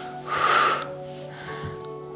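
A woman's loud breath, about half a second long, a third of a second in, then a softer breath, over steady background music.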